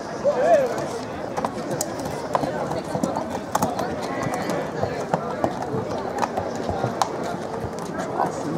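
Horses' hooves clopping on pavement as two horses walk past, a loose run of irregular sharp hoof strikes.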